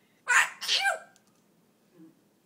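African grey parrot making a short, harsh, breathy two-part sound about a quarter of a second in. The second part carries a brief pitched note.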